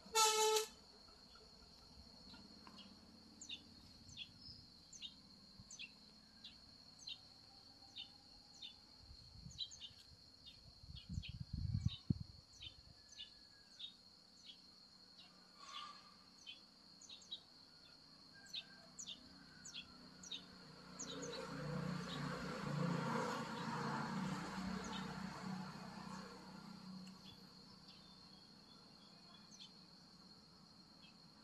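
Outdoor ambience: a steady high-pitched insect drone with short chirps repeating about twice a second. A short horn honk sounds right at the start, and a louder rumbling noise swells for several seconds in the second half.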